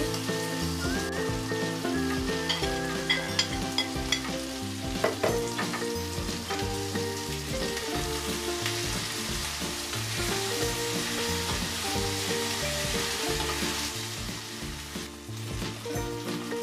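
Fried paneer cubes and poppy-seed masala paste sizzling in a non-stick kadai as they are stirred together, the steel slotted spatula clinking against the pan a few times in the first five seconds; the sizzle grows heavier in the second half. Light background music plays underneath.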